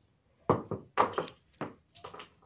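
A quick run of about six short knocks, some in pairs, starting about half a second in.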